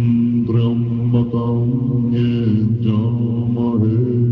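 Tibetan Buddhist monks chanting prayers in deep, low voices, holding one steady pitch while the syllables shift every second or so. It is heard through a hand-held tape recording.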